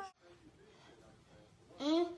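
Faint room noise after a sudden cut, then a person's short voiced call starting near the end.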